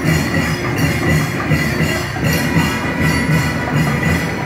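Loud live temple music with a steady, driving rhythm of drums and clattering percussion, and a sustained high tone over it.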